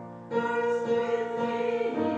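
Voices singing a Christmas carol in long held notes; the previous note fades, and a new, louder phrase begins about a third of a second in.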